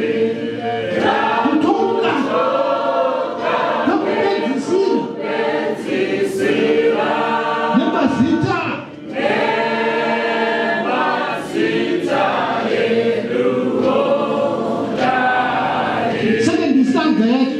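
A choir singing unaccompanied, many voices together in harmony, with a brief drop in level about nine seconds in.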